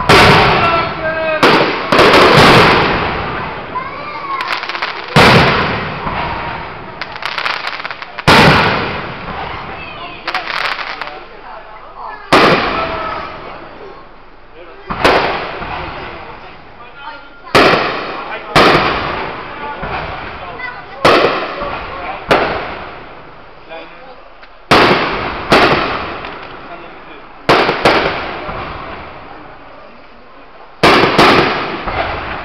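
Fireworks display: aerial shells bursting with loud bangs every two to three seconds, some in quick pairs, each fading away in a long rolling echo.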